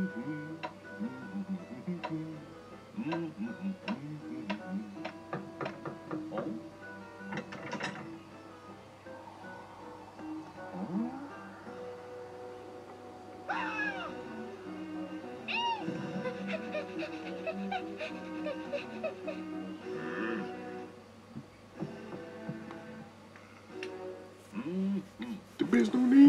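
Cartoon soundtrack: background music with a character's wordless vocal sounds and short sound effects.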